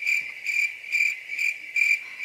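Cricket-chirp sound effect: a high, even chirp pulsing about two and a half times a second. This is the comic 'crickets' gag used to mark an awkward silence.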